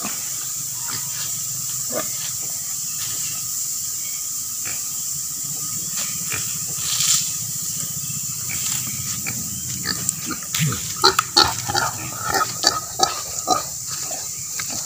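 A native pig rooting and feeding in dry leaf litter. Scattered rustles at first, then from about ten seconds in a dense run of sharp crackles and crunches, with one short low grunt-like sound among them, over a steady background hiss.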